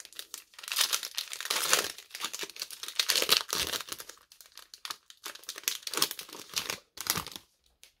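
Foil wrapper of a Score football card pack being torn open and crinkled by hand: a run of crackling rips and rustles, with a short lull about halfway through, stopping just before the end.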